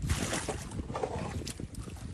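A boat moving across floodwater: rushing, splashing water with wind buffeting the microphone, an irregular noise without any steady engine tone.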